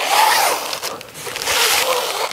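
Hook-and-loop velcro strip being pressed and worked together as a rolled goalie target is fastened onto a shooting tarp, a rasping crackle in two passes with a short dip about a second in.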